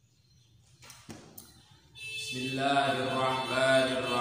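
A man's voice chanting in long held notes, starting about two seconds in.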